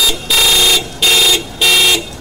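Car horn honking in a quick string of short blasts, about half a second each, four in all.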